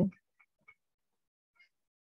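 The last syllable of a man's word, then a few faint, short ticks of a stylus on a tablet screen while writing, with near quiet between them.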